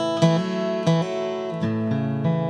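Instrumental music: acoustic guitar strumming chords, a stroke roughly every three-quarters of a second.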